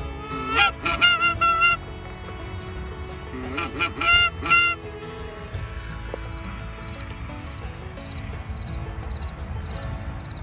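Geese honking: two quick runs of four or five loud honks, each breaking upward in pitch. Fainter short honks then keep repeating about twice a second.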